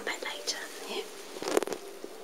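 A person whispering softly, with a short cluster of clicks about one and a half seconds in.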